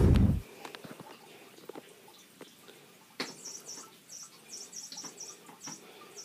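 A loud low thump at the start, then, from about three seconds in, a cat's toy mouse squeaking over and over in short high-pitched chirps.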